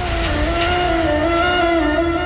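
Dramatic background score: one held, slightly wavering note with its overtones over a low rumble.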